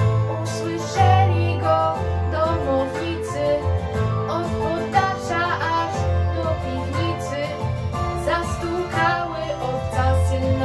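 A young woman singing a Polish Christmas carol (pastorałka) in Polish over a recorded instrumental backing track with a low bass line.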